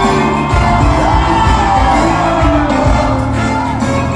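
Ghanaian gospel live band playing loudly with a steady bass beat and singing, with the congregation shouting and whooping along.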